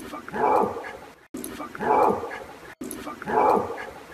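An unexplained bark-like animal call in the woods, the same short call heard three times in a row about 1.3 seconds apart with abrupt cuts between them. It is offered as a possible Bigfoot vocalization, though the narrator leaves open that it may be something else.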